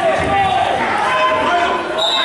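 Several people's voices talking and calling out at once, overlapping so that no words come through.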